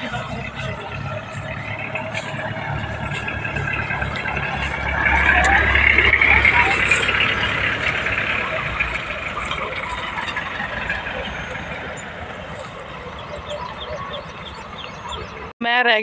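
A jeep and a Mahindra Scorpio SUV driving slowly along a dirt track, their engines running steadily; the sound swells as the Scorpio passes close about five to eight seconds in, then fades.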